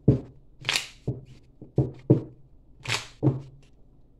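Tarot cards being shuffled by hand: a string of uneven swishes as the cards slide against each other, with knocks of the deck and hands on the table.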